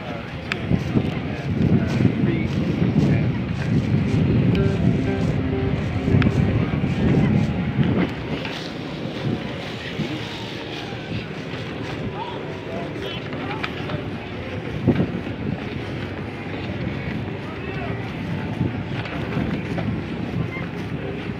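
Wind buffeting the microphone of a camera carried on a moving bicycle, heaviest in the first several seconds and easing after about eight seconds.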